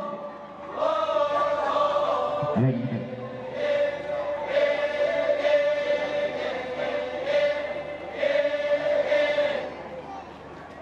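A group of voices chanting in unison, holding long notes on one steady pitch in phrases of a few seconds. A single man's voice calls out briefly about two and a half seconds in.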